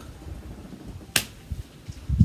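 A single sharp click about a second in, over low room tone.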